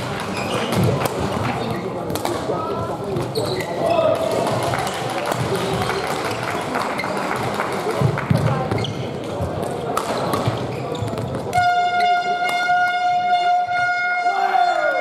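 Badminton doubles rally in a sports hall: sharp racket hits on the shuttlecock and players' footwork, with voices around the hall. Near the end, a steady, high horn-like tone starts and holds.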